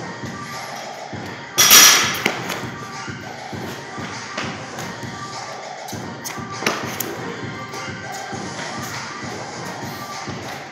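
Background music, with one loud thud of a loaded barbell dropped from overhead onto rubber gym flooring about a second and a half in, then a few lighter thumps and taps.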